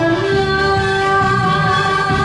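A trot song sung live by a woman over its musical accompaniment, the singer holding one long steady note.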